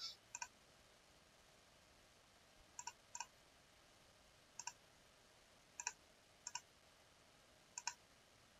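Computer mouse button clicking about seven times at irregular intervals, each a quick double tick of the button pressing and releasing, with near silence between the clicks.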